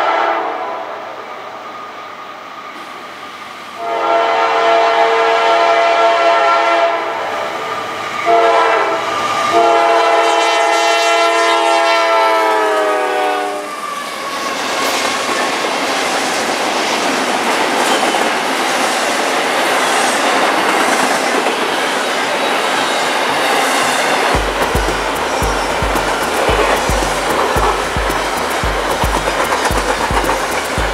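Norfolk Southern freight locomotive's air horn blowing for a crossing: a blast fading out at the start, then long, short and long blasts, the last one dropping in pitch as the locomotive passes. The intermodal train's cars then roll by with steady wheel noise, and regular low thumps about twice a second near the end, typical of wheels over rail joints.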